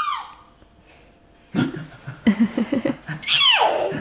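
Playful vocal noises: an adult's low voice in short, rough bursts, and about three seconds in a toddler's single high shriek that slides steeply down in pitch.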